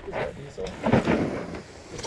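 Mostly speech: a man says "all right" over a low, rough rumble of background noise.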